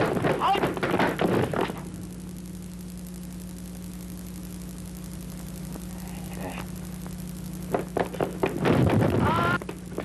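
Kung fu film fight soundtrack: men's shouts and yells with hit sounds in the first two seconds, then a steady low electrical hum for about six seconds. Near the end come a few sharp knocks and another burst of shouting.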